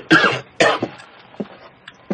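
A man coughing: two harsh coughs in the first second, following on from one just before, then a few faint throat sounds.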